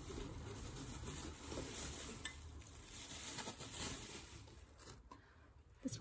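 Glassware being handled and picked out from a pile, with a few light clinks of glass against glass over soft shuffling.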